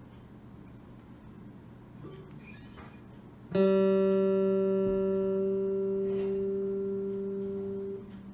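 Cigar box guitar string plucked once, a tuning check after stretching a new string: one clear steady note that rings and slowly fades for about four seconds before being damped suddenly. Faint ticks and handling noise come before it.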